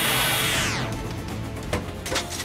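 Cartoon background music with a falling whoosh effect that fades out under a second in. Near the end come a couple of clunks from a locomotive cab's brake lever being pulled; the lever is stuck and won't stop the train.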